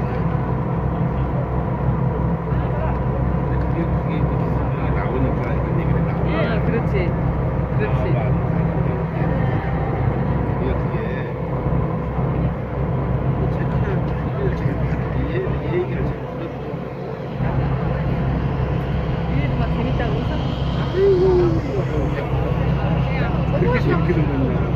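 Ferry engine running under way: a steady low rumble with a fast pulse that eases off briefly about two-thirds of the way through.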